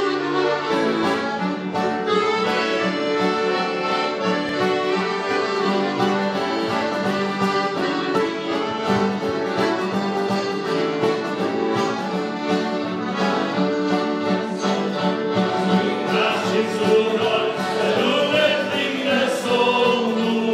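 Two piano accordions playing a lively melody in harmony, backed by strummed acoustic guitar and electric guitar: a small folk-style band's instrumental introduction.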